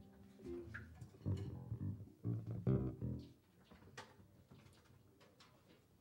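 Electric bass guitar playing a short run of plucked low notes in the first half. After that it goes quiet apart from a few faint taps.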